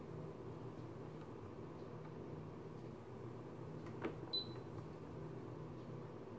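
Faint steady room hum. About four seconds in, a click and then a short high beep from a Siglent SDS1104X-E digital oscilloscope as its front-panel controls are worked.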